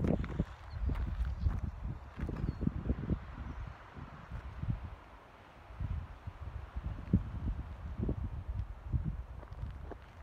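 Wind and handling noise on a phone's microphone while it is panned across the view: an uneven low rumble with a few light knocks, quietest about halfway through.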